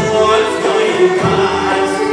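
Live Pontic Greek folk music: singing over bowed strings, the Pontic lyra and violins, with plucked lutes.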